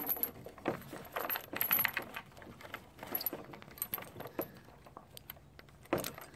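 Brass buckle and metal hardware on a leather strap clinking and jingling as the strap is handled and buckled back up: a string of light metallic clicks, busiest in the first couple of seconds and sparser after.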